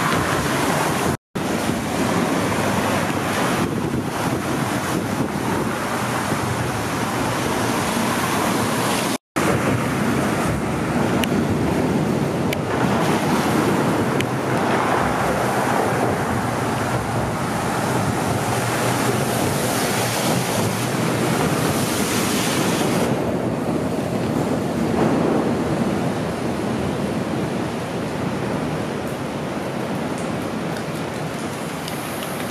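Wind buffeting the microphone outdoors: a steady rushing noise, broken twice by a brief drop to silence, about a second in and about nine seconds in.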